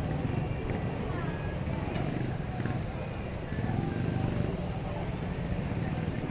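Busy street traffic from motorcycles and scooters: a steady low engine hum, with people's voices in the background.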